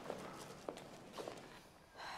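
Faint footsteps, a few separate steps about half a second apart.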